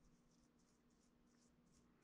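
Very faint, soft strokes of a paintbrush wet with butane lighter fluid being worked over oil-based clay to smooth rough areas, about three strokes a second, over a faint steady hum.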